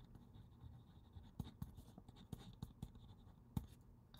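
Faint, irregular scratches and taps of handwriting on graph paper.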